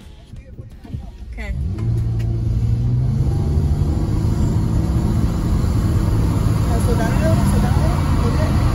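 A V6 car accelerating hard from a 45 mph roll, heard from inside the cabin: the engine and road noise swell about a second and a half in, then hold as a loud, steady drone under full throttle.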